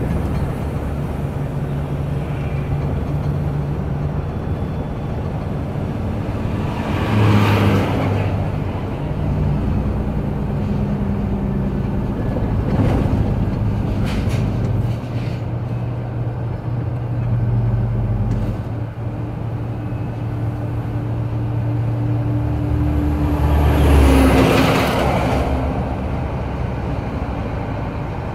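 Truck engine running at low speed on a downhill grade, a steady low hum whose note shifts a few times. Vehicles climbing in the other lane pass twice with a louder rush, about seven seconds in and again near the end.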